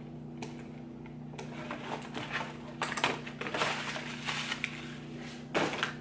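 Packaging crinkling and rustling as the wig is unwrapped and lifted out, in irregular crackly handling noises that start about two seconds in and stop shortly before the end, over a steady low hum.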